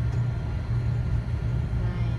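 Low, steady rumble of a motor vehicle's engine and running noise, with no clear events.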